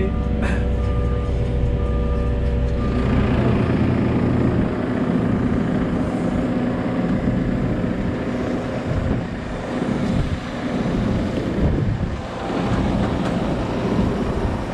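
A diesel engine runs steadily, heard from inside a loader's cab. After about three seconds it gives way to a tractor with a Pöttinger Jumbo loader wagon driving onto the concrete beside the silage clamp, a rougher mix of engine and rolling noise.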